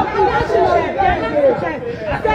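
Several people talking at once: overlapping voices and chatter, no single speaker clear.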